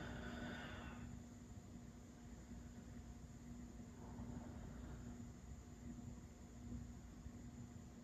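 Near silence: quiet room tone with a faint steady hum, and a soft breath in the first second.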